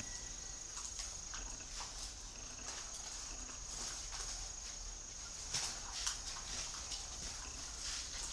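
Quiet caged-bird ambience: a faint steady high-pitched whine with scattered light clicks and taps from the dove moving in its wire cage, the two sharpest clicks a little past halfway. No cooing is heard.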